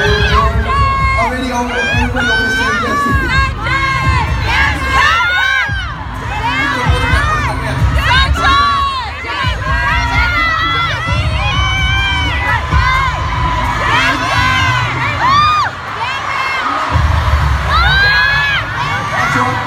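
Large crowd of fans screaming and cheering, with many high-pitched shrieks rising and falling over one another. A low rumble comes and goes underneath.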